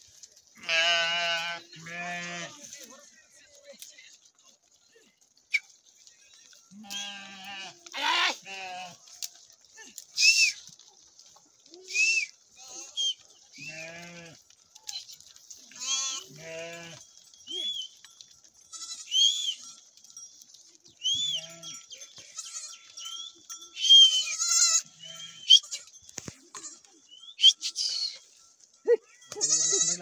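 A mixed flock of sheep and goats bleating, with many separate calls one after another, some low and some high, several with a wavering tremble.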